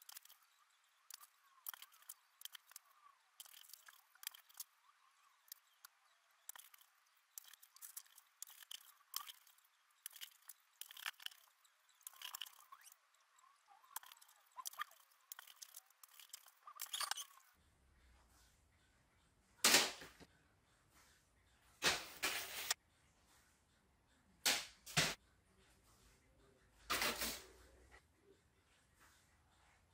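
Faint, irregular footsteps and light clicks on a hard kitchen floor, followed in the second half by several louder, short knocks.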